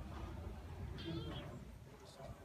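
A short, high, wavering animal call about a second in, over a low steady rumble.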